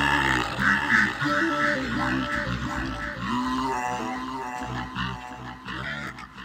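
Drawn-out, voice-like sounds that rise and fall in pitch over a low hum, slowly fading toward the end.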